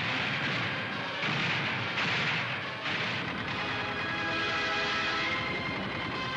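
Gunfire on an old newsreel soundtrack, mixed with music, with sudden bursts about one and three seconds in.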